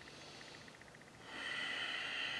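A person's long audible breath, starting about a second and a half in after a moment of quiet.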